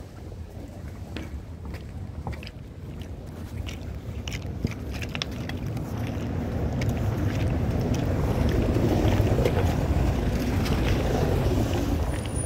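Low rumbling outdoor noise on a handheld phone microphone while walking, with scattered light clicks of footsteps. The rumble swells louder in the second half.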